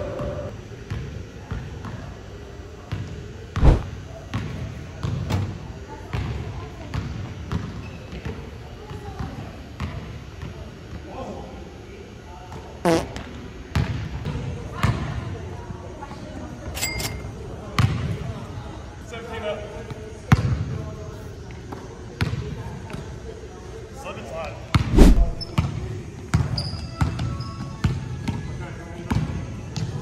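A basketball bouncing on a hardwood gym floor, irregular thuds scattered through, the hardest ones about four seconds in and near the end, echoing in a large gym.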